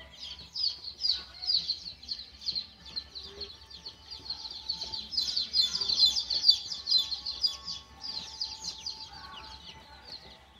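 A crowd of young chicks peeping without pause, a dense chorus of short, high, falling cheeps that grows loudest about halfway through.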